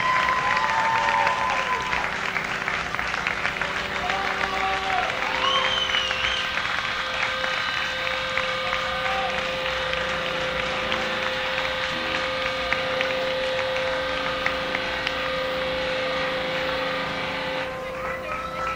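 Live club audience applauding, with a few whoops and whistles in the first few seconds. A steady pitched hum from the stage sounds underneath from about five seconds in.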